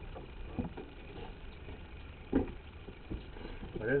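Quiet background with a steady low rumble and a brief murmur of a voice a little past the middle.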